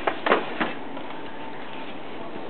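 Packaging rustling briefly a couple of times in the first second as a boxed game case is pulled out of its box, then a steady background hiss.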